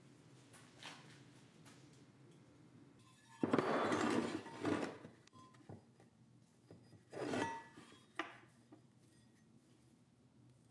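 Steel canister billets being handled on a workbench: light clinks, with two louder scrapes of about a second each, a little over three seconds in and again about seven seconds in.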